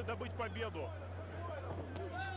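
Faint, distant voices over a steady low hum.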